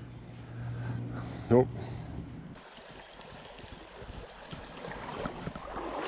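Faint, steady rush of flowing creek water. It drops quieter a little past halfway, then slowly builds again.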